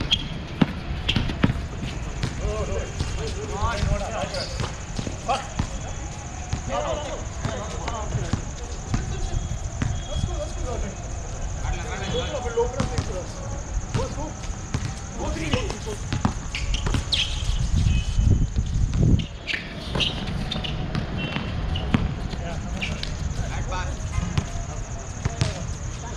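Basketball bouncing on an outdoor hard court, short thuds at irregular spacing, with players' voices calling across the court.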